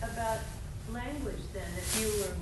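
Faint, distant-sounding speech over a steady low background hiss of room noise.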